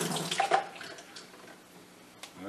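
Water running and splashing in a utility sink, dying away about half a second in, with a light knock as it stops.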